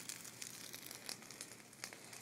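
Bonfire crackling faintly: a few sharp pops over a low hiss.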